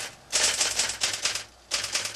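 Typewriter keys being struck in quick runs: a burst of rapid typing, a short pause about a second and a half in, then typing again.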